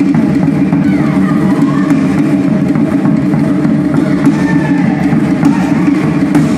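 Tahitian drum ensemble, including a rope-laced barrel drum, playing a fast, dense, continuous drum rhythm for dance. Voices call out over it now and then.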